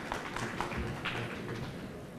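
Audience applause dying away into a few scattered claps.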